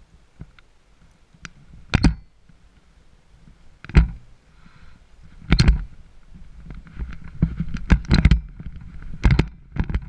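Gusts of wind buffeting a helmet-mounted action camera's microphone: short loud blasts a couple of seconds apart at first, then coming closer together over a low rumble from about seven seconds in.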